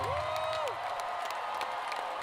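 Concert crowd applauding and cheering, with one voice holding a long shout in the first second.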